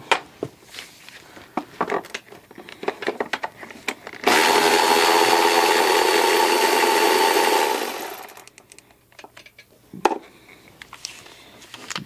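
Cordless power ratchet on a 10 mm socket spinning a timing belt cover bolt out for about three and a half seconds, its motor winding down at the end. Light clicks of the socket being fitted come before it, and a single sharp knock follows.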